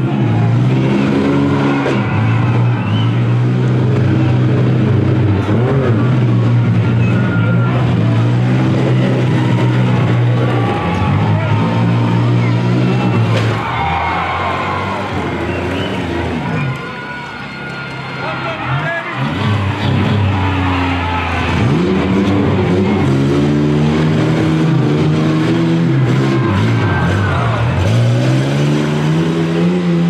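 Demolition-derby minivans and small trucks running hard, their engines repeatedly revving up and falling back in pitch as they drive and ram, with an occasional bang.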